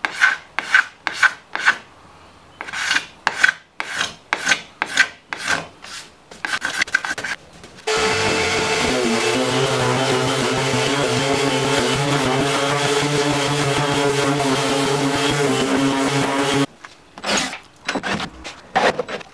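Hand-tool strokes rubbing on wood, a little over two a second, with a short pause about two seconds in. Then an electric power tool runs steadily for about nine seconds and stops abruptly, and the hand strokes start again near the end.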